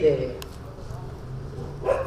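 A man's voice over a microphone and loudspeaker trails off into a short pause, filled by a low hum and faint background sound, and resumes just before the end.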